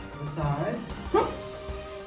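A man's short, sharp martial-arts shout (kihap) a little past a second in, given as he snaps into a back stance with a block, over steady background music. A lower, drawn-out voice sound comes just before the shout.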